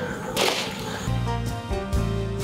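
A short whoosh, like an editing transition effect, about half a second in, followed about a second in by background music with a steady low bass.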